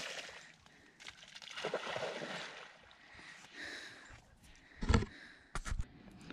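Dog splashing and sloshing through the shallow water of a muddy pond, in several uneven surges, with a heavy thump near the end.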